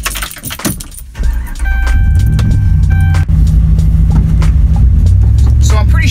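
Inside a car's cabin, keys jangle and click in the ignition, then the car's engine starts about a second and a half in and runs with a steady low rumble. A dashboard warning chime dings repeatedly for a second or so while the engine starts.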